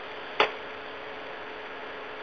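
Steady hiss of an open conference-call line with a faint hum, broken by one sharp click about half a second in.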